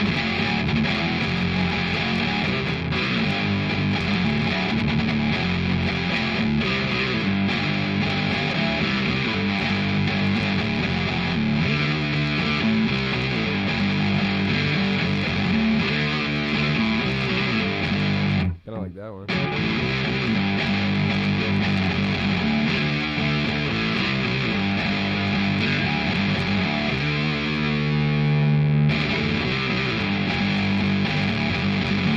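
Distorted electric guitar, an Explorer-style solid body, playing a heavy riff unaccompanied. It stops suddenly for about a second two-thirds of the way through, then resumes, with held notes ringing near the end.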